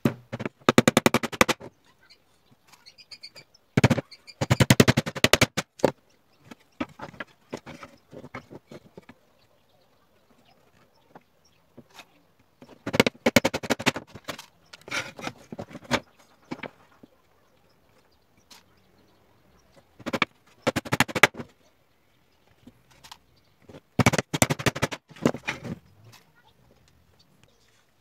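Claw hammer driving nails into pallet-wood slats, in short bursts of quick blows about a second long, repeated some seven times with pauses between.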